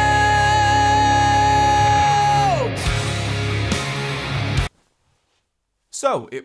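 Male vocal in a compressed, EQ'd rock band mix, recorded in a dry vocal booth from about 18 inches. One long sung note is held at a steady pitch, then falls away about two and a half seconds in. The music runs on until it cuts off suddenly with more than a second left, leaving silence.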